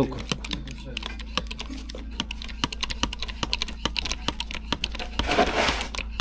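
Hand-pumped hydraulic press being worked against a steel reinforcing bar: rapid, irregular clicking of the pump handles and mechanism, several clicks a second, with a brief rustle about five seconds in.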